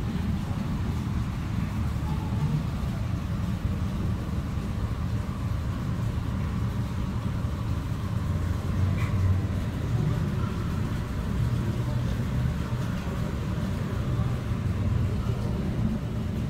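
Steady low rumble of indoor room noise in a large aquarium hall, with faint voices in the background.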